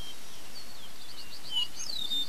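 Small birds chirping over a steady background hiss, with a quick run of short, evenly spaced chirps in the middle and a falling whistle near the end.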